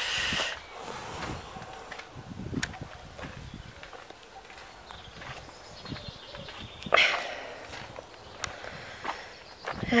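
Footsteps of a person walking outdoors, soft irregular footfalls with light handling noise. There is a short, sharp noisy burst about seven seconds in.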